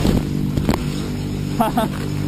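A steady low droning hum, with a couple of short vocal sounds about a second and a half in and a few light clicks.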